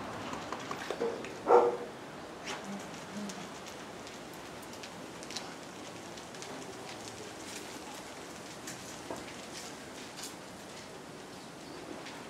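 Steady rain hiss with scattered drop ticks, and one brief louder sound about a second and a half in.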